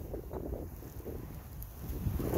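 Low, uneven rumble of wind buffeting the microphone, with a few faint rustles.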